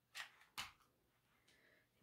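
Near silence with two brief soft handling noises, about a fifth of a second and just over half a second in, as felt pieces and a hot glue gun are handled on the work table.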